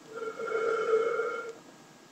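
A beginner blowing across the embouchure hole of a flute head joint whose open end is stopped with the hand, giving one steady, breathy tone that lasts about a second and a half.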